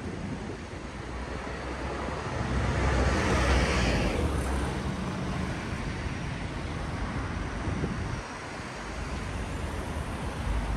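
City street traffic: motor vehicles running along the road with a low rumble, one passing close by and swelling to its loudest about three to four seconds in before fading.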